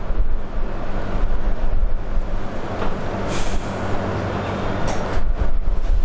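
Steady rumbling background noise with a low hum, and a few brief hisses about three and five seconds in.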